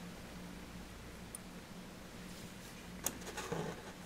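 Small glass beads clicking together as one more is slid onto monofilament line: a brief sharp click and a short rustle about three seconds in, over a faint steady hum.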